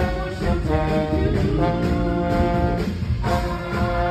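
Slide trombone playing held notes with a brass horn section in a Motown arrangement, the chords changing every second or so, over the backing band.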